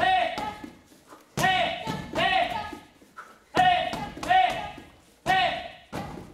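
Taekwondo kihap shouts, two people taking turns, each with a sharp thud as a kick hits a freestanding kicking bag. The shout-and-kick pairs come in quick succession about every two seconds.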